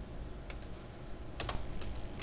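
A few keystrokes on a computer keyboard: a pair of clicks about half a second in, then three more in the second half, over a low steady background hum.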